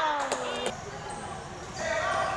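A basketball bouncing on the court floor, a few sharp bounces in the first second, with spectators' shouts trailing off at the start and another shout rising near the end.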